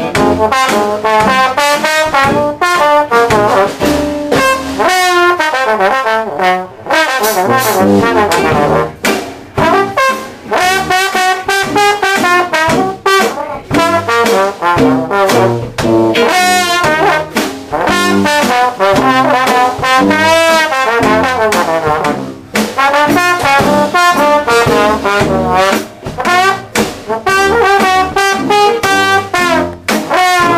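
Trombone solo in a traditional New Orleans–style jazz tune, gliding between some notes, with the band's rhythm section playing underneath.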